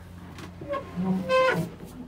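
The boat's sliding dinette backrest is shifted over, and its frame gives one short squeak of about a second, rising slightly in pitch, about a second in.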